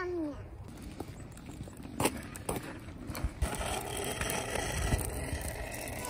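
A child's kick scooter rolling over asphalt, with a low rumble throughout and a few sharp knocks around the middle.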